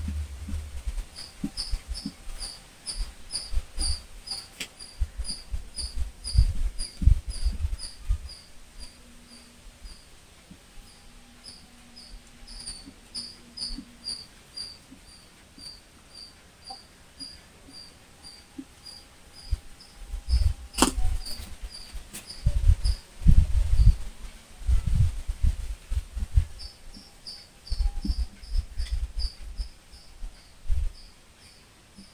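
A high chirp repeating evenly, about two to three times a second, with dull low thumps coming and going, loudest in the second half, and a sharp click about twenty seconds in.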